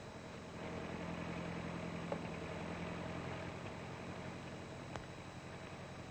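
An engine running with a steady low hum that swells about half a second in and slowly fades, with a single brief click near the end.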